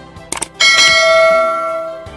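A few quick mouse clicks, then a loud bell chime that rings out and slowly fades: the click-and-ding sound effect of a subscribe-button animation.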